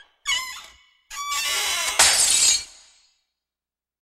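Crash and breakage sound effects for animated title letters falling away: a sudden ringing hit, a clattering stretch a second later, then a louder crash about two seconds in that rings out and fades.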